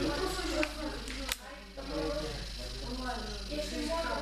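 Indistinct voices talking in a large echoing hall over a steady low hum, with one short sharp click a little over a second in.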